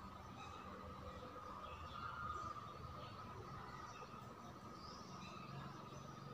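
Faint room tone: a steady faint high hum with a scatter of brief, faint high chirps.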